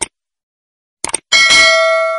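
Subscribe-button sound effect: a short click, then two quick mouse clicks about a second in, followed by a notification bell ding that rings on and slowly fades.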